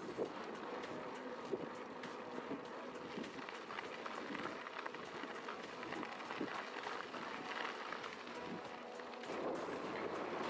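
Wind buffeting the action camera's microphone with its automatic wind reduction switched off, over the steady crunch of mountain-bike tyres rolling on gravel with scattered small clicks.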